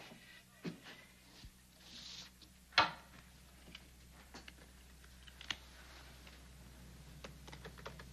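Playing cards being handled: faint, scattered clicks and flicks, with one louder click a little under three seconds in.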